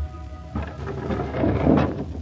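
A held music chord dies away, then a rushing noise swells up and grows brighter, peaking just before the end, over the low steady hum of an old radio transcription.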